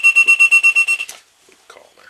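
An electronic alarm beeping rapidly on one high pitch, about ten short beeps a second, that cuts off about a second in.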